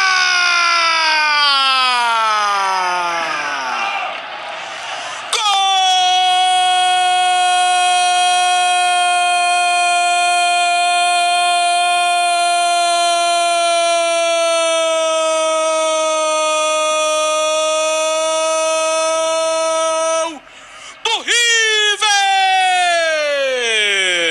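Brazilian football radio narrator's long drawn-out goal cry. It opens with a falling call, then holds one note for about fifteen seconds before breaking off, followed by short cries and another falling call near the end.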